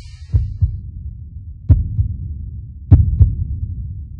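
Heartbeat-like pairs of deep bass thumps in the soundtrack of a closing logo animation, a pair about every 1.3 s, over a low hum.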